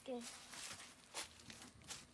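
A child's brief spoken 'yes', then faint, scattered rustling and crinkling, like dry straw and leaves being stirred in a goat shed.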